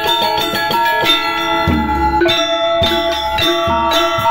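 Balinese gamelan playing: bronze-keyed metallophones struck with mallets in fast, even strokes, the keys ringing on. Deep notes swell up under them about two seconds in and again a little later.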